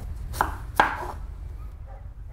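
Kitchen knife chopping vegetables on a wooden cutting board: two sharp chops in quick succession, then a pause.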